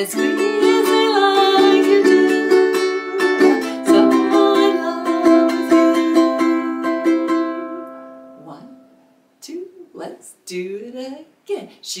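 Ukulele strummed in a steady rhythm with a woman singing along. The chords ring out and fade about eight seconds in, and a voice comes back briefly near the end.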